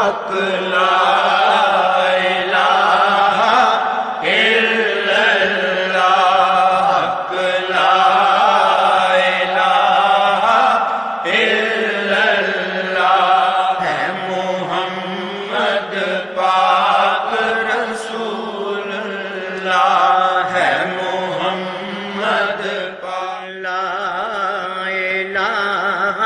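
Devotional chanting, sung in long wavering held notes over a steady low drone.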